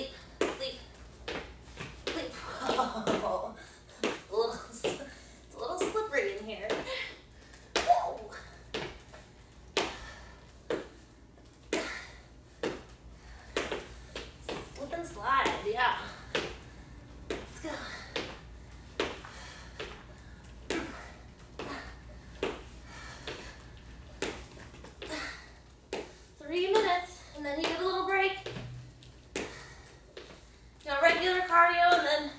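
Sneakers landing on a wooden floor in repeated cardio jumps, a sharp thud about once a second, with short bursts of a woman's voice in between.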